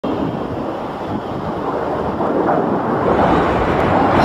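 Jet noise from a low-flying twin-engine Boeing 767 airliner: a steady rushing sound that grows gradually louder as the plane approaches.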